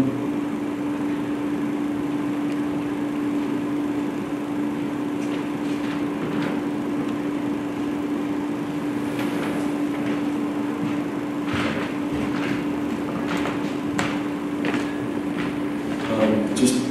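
A steady hum on one pitch over room noise, with a few faint scattered clicks and knocks.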